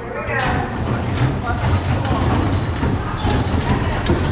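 Bumper cars running on the arena floor: a steady low rumble with frequent knocks and clacks as the cars bump and rattle.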